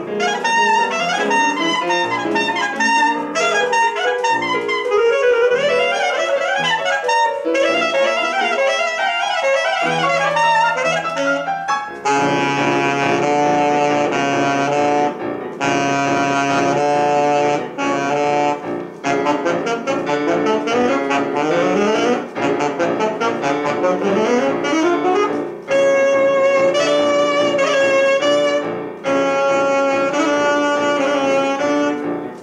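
Saxophone and grand piano playing a fast classical duo: quick running notes for the first dozen seconds, then held saxophone notes over rapidly repeated piano chords, with brief breaks between phrases.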